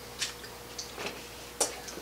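A few faint clicks and crinkles from a plastic water bottle as a man drinks from it and lowers it, the sharpest click about one and a half seconds in, over a faint steady hum in a small quiet room.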